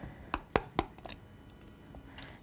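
Four light clicks and knocks of kitchen handling in about the first second, as butter is put into a pan to melt.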